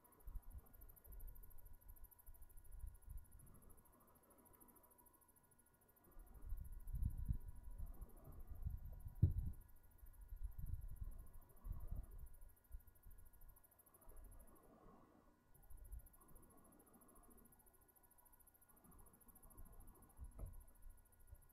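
A man blowing into a smouldering tinder nest of dry grass to coax the ember into flame, heard as soft, irregular low puffs of breath that grow stronger for several seconds in the middle.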